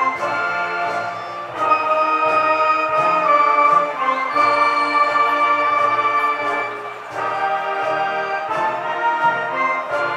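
School concert band playing a slow processional piece in sustained brass and woodwind chords, the chord changing every second or two, with a brief softening about seven seconds in.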